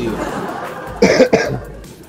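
A man coughing: two short coughs about a second in.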